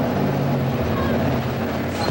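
An engine running at a steady pitch, a low, even drone.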